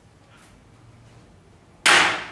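Quiet classroom room tone, then near the end a single sudden, loud slam on a school desk that rings briefly in the room.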